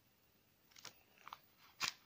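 A paper notebook being handled: a few faint, short rustles and taps of its pages and cover, the loudest near the end.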